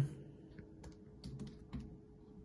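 Keys of a handheld scientific calculator being pressed: a few light, unevenly spaced clicks as a subtraction is entered.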